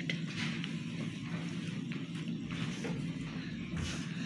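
Plastic fidget spinners spinning on a wooden tabletop, a steady low whirr.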